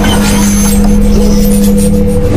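Loud sci-fi machine sound effect from an animated logo intro: a steady mechanical hum over a heavy low rumble, with a higher tone swooping up into the hum about a second in.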